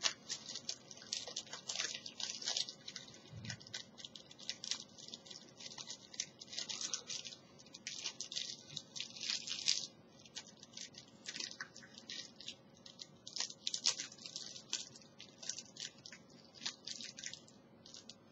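A sealed playing-card box and its cellophane wrapper being cut and torn open by hand. The wrapper and cardboard crinkle in a long run of soft, irregular crackles and clicks, with a few short pauses.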